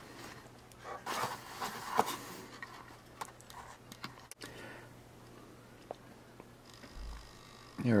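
Faint handling noise: rustling with a few clicks from about one to two seconds in, over a low steady hum, with scattered faint clicks later. A man's voice starts at the very end.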